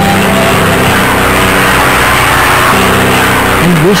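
Propeller airplane engine sound effect, a steady drone that swells in the middle as the plane flies across.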